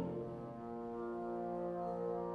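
Fanfare band of brass and saxophones playing soft held chords; a louder, fuller chord falls away right at the start and the deep bass thins out.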